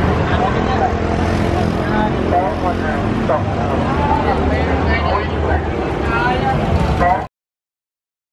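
Busy night-street ambience: several people's voices chattering indistinctly over the steady low hum of vehicle engines. The sound cuts off suddenly near the end.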